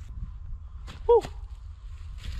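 Wind rumbling on the microphone, with a short, high, falling 'uồ' cry of excitement about a second in, just after a faint click.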